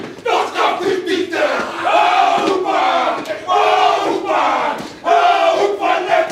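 A group of men performing a haka, shouting the chant together in loud phrases with short breaks, and sharp hand slaps among the voices.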